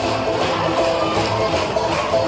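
Live band music in an instrumental passage: guitar and a held melody line over a steady bass and beat.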